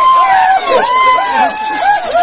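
A crowd of men shouting over one another, many raised voices overlapping.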